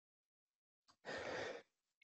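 Silence, then a single short breath into the microphone about a second in, lasting about half a second.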